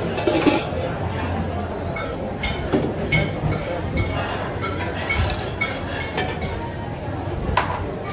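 A stainless steel lid clinks as it is set onto a metal soup pot, followed by scattered clinks of pans and utensils over a steady murmur of restaurant voices.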